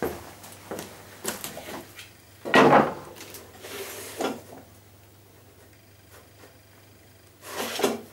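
Off-camera handling noises on a wooden workbench: several short knocks and clatters of wood and tools, the loudest a rattling clatter about two and a half seconds in, then a quiet stretch and a scraping rustle near the end.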